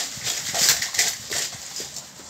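Large clear plastic bag full of plastic toys crinkling and rustling in irregular bursts as it is lifted and shaken, dying down near the end.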